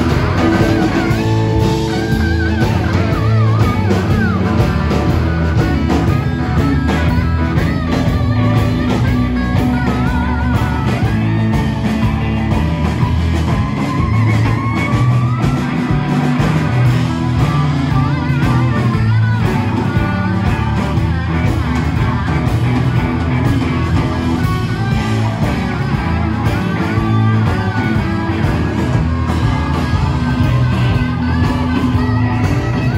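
Live rock band playing loudly: electric guitars, bass guitar and drum kit, with a lead line of bending, wavering notes above the rhythm.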